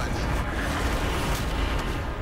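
Sound-designed rush of air and deep rumble of high-speed flight: a loud, dense, steady noise with no clear tone.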